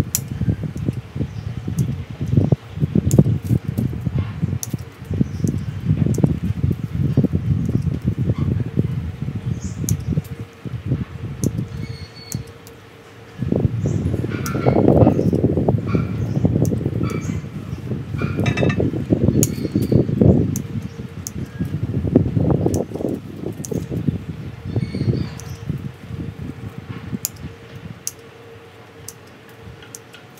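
Heavy ceramic bonsai pot being turned by hand on its stand: long, uneven stretches of low rumbling scrape with scattered light clicks. Near the end it goes quieter, leaving small clicks of pruning shears at the branches.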